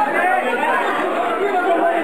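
Chatter of many people talking over one another in a room.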